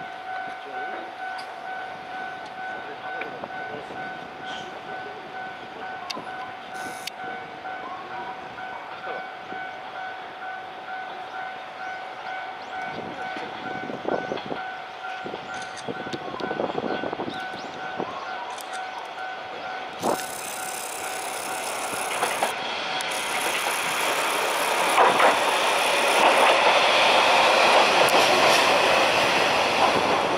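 An electronic warning bell rings in a fast, even repeating pattern for the first two-thirds. It stops about 20 seconds in, and a single-car Wa89-300 diesel railcar's engine and wheels grow steadily louder as it pulls into the station.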